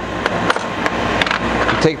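Small steel cams clicking and clinking as they are handled and set down on the drill grinder's metal tray, about six sharp clicks spread over a steady rushing noise.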